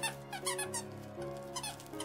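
A squeaky dog toy being squeezed, with several short squeaks in quick, irregular succession in the first second, over soft background music.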